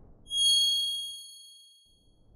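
A single bright, bell-like chime from a logo-sting sound effect. It is struck once about a third of a second in and rings away over about a second and a half, after the tail of a fading whoosh.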